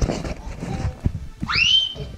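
Rustling and knocking from movement through a room, with a sharp knock about a second in, then a high-pitched squeal that rises and holds near the end.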